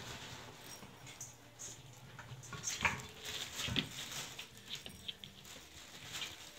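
Four-week-old border collie puppies moving about a play pen: light pattering and scuffling, with scattered short high sounds and two soft knocks about three and four seconds in.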